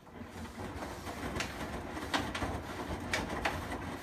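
Front-loading washing machine on a delicates cycle, its drum starting to turn: water sloshing and wet clothes tumbling, with a steady low rumble and occasional sharp knocks every second or so.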